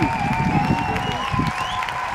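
Wind buffeting the microphone, a rough gusty rumble, over faint background music with steady held tones.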